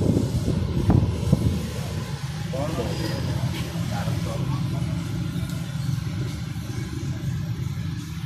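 Voices talking briefly at the start, then a steady low mechanical rumble with faint talk over it.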